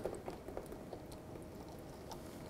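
Faint handling noise with a few small ticks as a steel banjo bolt with a copper washer is slid through the eyelet of a brake flex hose, over a quiet room hum.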